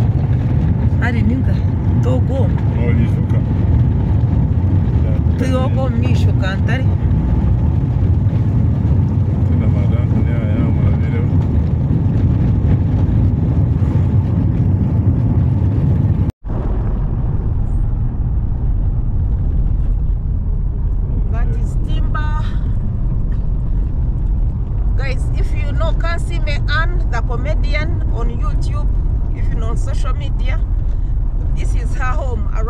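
Steady low road and engine rumble inside a car driving on a rough unpaved dirt road, with people's voices talking now and then over it. The sound cuts out for an instant about halfway through.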